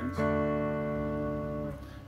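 Electric guitar: a D chord on the fourth and third strings struck once, ringing steadily and then dying away near the end.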